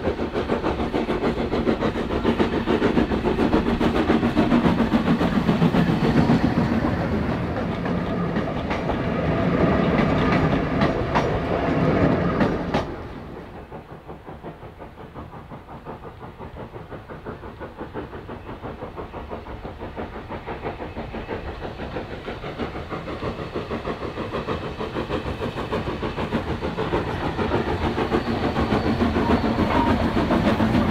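Lambton tank no.29, an 0-6-2 steam tank locomotive, working a train past at close range, with clicks from the wheels on the track. The sound drops off sharply about 13 seconds in, then grows steadily louder again as the engine approaches near the end.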